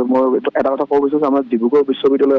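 A man speaking continuously over a telephone line, his voice thin and cut off in the highs.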